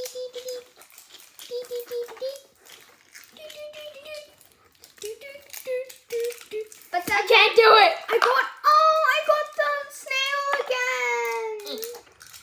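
A child humming and vocalising a wordless tune in held notes, louder in the second half and ending on a falling note. Under it, light crinkling and clicking of plastic wrappers and capsules being handled.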